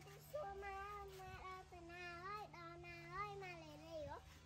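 A child's voice singing a slow tune in long held notes that step up and down in pitch, over a faint steady low hum.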